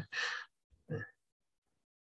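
A man's short breathy laugh, an exhale through a smile, followed by a brief voiced sound about a second in.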